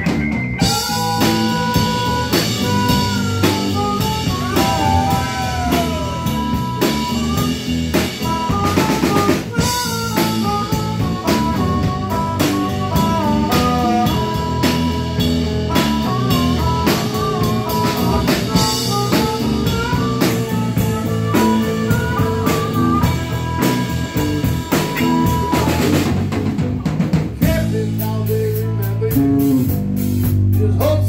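Live blues-rock band playing an instrumental break: drum kit with snare rimshots and bass drum under bass and electric guitar, with a lead of held, bending notes from a harmonica played cupped into a microphone. Near the end the lead drops out, leaving mostly bass and drums.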